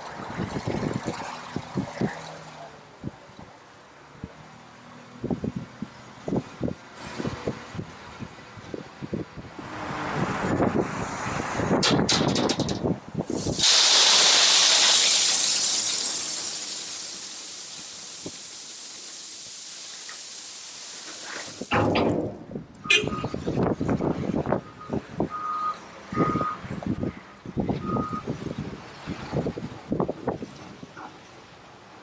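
Crushed limestone being loaded by a diesel wheel loader into a steel dump trailer. Scattered clatter and knocks give way to a loud rushing pour of stone about halfway through, which fades to a steady hiss. More clatter and a loader's reversing beeps follow near the end.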